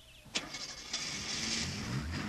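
A click, then a Lincoln Continental's engine starting and running steadily as the car pulls away.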